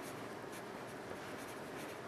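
Pencil writing numbers on a sheet of paper: faint short strokes of graphite on paper.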